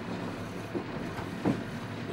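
Boat engine running steadily at low revs, a low even hum heard inside the wheelhouse.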